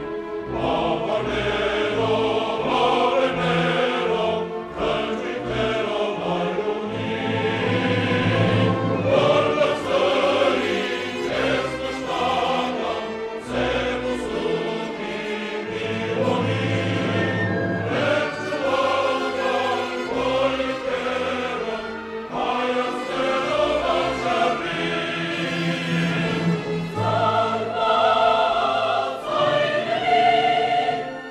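Choir and symphony orchestra performing a classical choral work sung in Armenian, with sustained sung lines over shifting orchestral bass notes.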